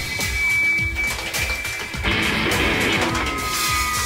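Live band music from a concert stage, with a regular drum beat under pitched instruments; the music changes about two seconds in.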